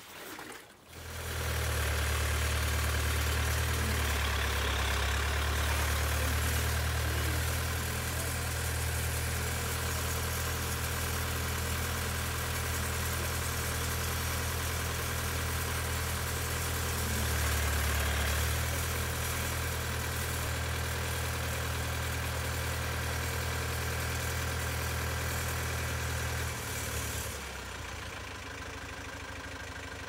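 Diesel tractor engine idling steadily, starting about a second in and dropping away near the end.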